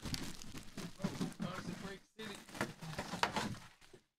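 Low, indistinct talking mixed with crinkling and tearing of foil trading-card pack wrappers being handled and ripped open.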